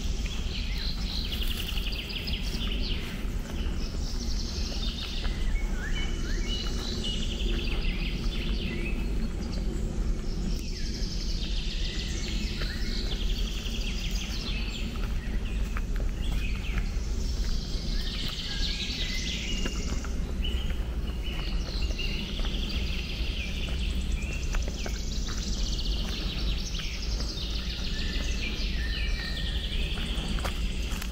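Several songbirds singing, with short song phrases and trills repeating every few seconds. Underneath runs a steady low rumble.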